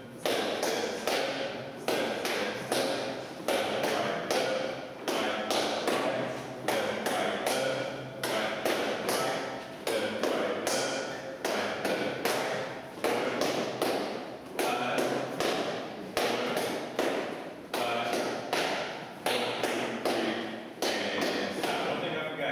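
Shoes stepping on a hardwood floor in a steady repeating rhythm as a small group dances the salsa basic step.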